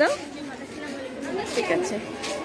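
A woman's sentence trailing off at the very start, then quiet chatter of several girls' voices.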